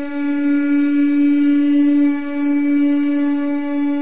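One long held note from a wind instrument, steady in pitch throughout.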